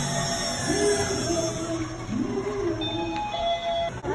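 Background music with held tones and a voice-like melodic line, carrying through a large indoor space, with faint distant voices.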